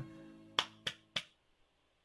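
Music dies away, then three short sharp clicks about a third of a second apart, followed by near silence.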